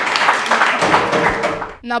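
A small group applauding with rapid, overlapping hand claps, dying away near the end.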